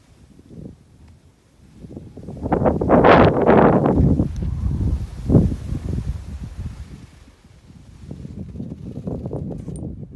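Wind buffeting the microphone and skis scraping over groomed snow during a downhill run, loudest about three to four seconds in, with a sharp knock about five seconds in.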